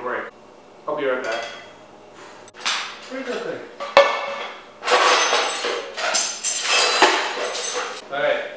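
Metal scooter parts and hardware clinking and rattling as they are handled, in irregular clatters with a sharp metal click about four seconds in.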